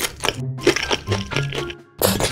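Loud crunchy bites into crispy food, a quick run of sharp crunches with short pauses, over background music.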